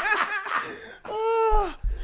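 Several men laughing hard and close to the microphones: quick choppy bursts of laughter, then one long drawn-out laugh about a second in, with a low bump on the mic near the end.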